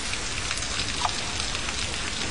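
Recorded light rain played over a mixing desk: a steady, even patter with many small scattered drop ticks.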